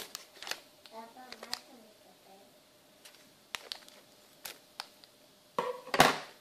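Scissors snipping open a plastic anti-static bag, a few sharp separate clicks with light crinkling of the plastic between them.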